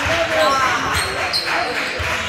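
A basketball bouncing on a hardwood gym floor in repeated low thuds, with people talking in a large gym.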